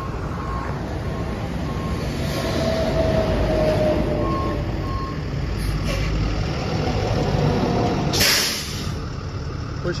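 A Ford F750's 6.7 Power Stroke turbo-diesel V8 idling steadily, with faint on-and-off beeping. A short loud hiss comes about eight seconds in.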